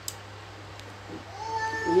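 A long, drawn-out animal cry that starts about one and a half seconds in and holds a nearly steady pitch.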